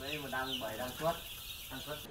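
A flock of young chickens calling: many overlapping short, high, falling peeps over lower calls.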